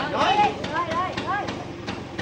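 Voices talking over a small motor scooter engine idling steadily.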